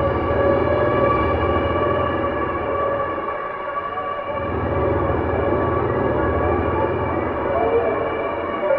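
Dark ambient electronic music: a sustained synthesizer drone of layered, steady held tones over a low rumbling bass. The bass thins out briefly about halfway through.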